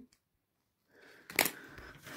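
Near silence, then a single sharp click about one and a half seconds in, followed by a faint hiss.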